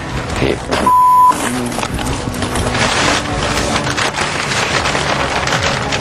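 A short, loud, steady bleep about a second in, then a large sheet of paper rustling and crinkling as it is handled, with voices in the background.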